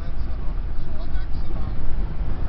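Steady low road and engine rumble heard inside the cabin of a car driving at freeway speed, with faint voices in the cabin over it.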